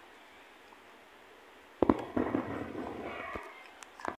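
Handling noise from fingers on a phone filming: quiet for the first two seconds, then a sudden sharp knock followed by a couple of seconds of rubbing and crackling, with a few smaller clicks near the end.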